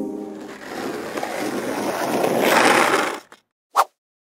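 Skateboard wheels rolling, growing louder over about three seconds and then cutting off suddenly, followed after a short gap by one sharp clack. A music chord fades out at the start.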